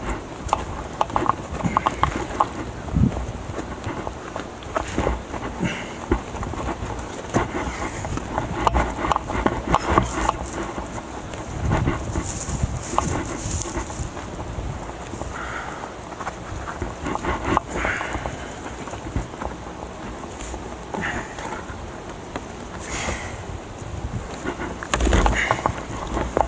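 Irregular scuffs, taps and knocks of a climber's hands and shoes on rock and of his backpack and camera gear shifting as he moves, over a steady low rumble.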